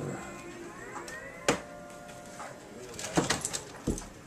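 A cat's drawn-out meow that rises in pitch and is held for about two seconds, with a few sharp knocks around it.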